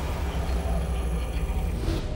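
A steady, loud vehicle rumble, a dense noise with a strong low end, swelling briefly near the end.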